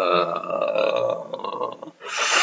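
A man's low, drawn-out, croaking vocal sound like a burp, part of his impression of a stoned slacker, fading out near the end.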